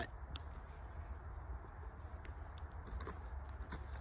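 Quiet outdoor background: a steady low rumble with a few faint, scattered clicks.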